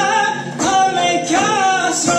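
A male voice singing Persian classical avaz in the karashmeh form, in held phrases with gliding, ornamented pitch, over sustained bowed kamancheh notes.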